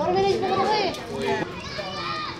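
Children's voices talking and calling out at play, mixed with other people talking.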